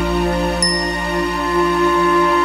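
A held instrumental chord of hymn accompaniment sounding steadily, with a short, bright, high-pitched ding about half a second in.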